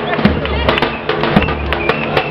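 A large street drum beaten hard in a quick, uneven rhythm, its low booms and sharp cracks over live music and crowd voices.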